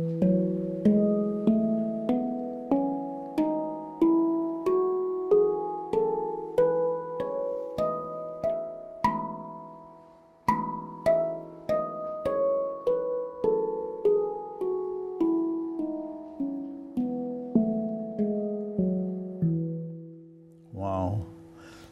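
A handpan struck by hand one note at a time, stepping up through all of its notes in a rising scale, then, after a short break about ten seconds in, back down again. Each note rings on under the next.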